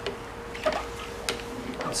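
Quiet handling noise: a few light clicks and taps over a faint steady hum, with no polisher motor running.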